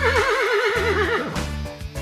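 A horse whinnying: the tail of a neigh with a rapidly wavering pitch that fades out about a second and a half in, over background music.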